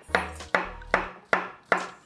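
Kitchen knife slicing a banana into rounds on a wooden cutting board: five even knocks as the blade meets the board, about two and a half a second.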